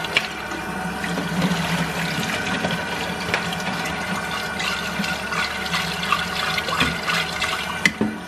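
Steady rushing noise, like running water, with a low steady hum and a few faint clicks.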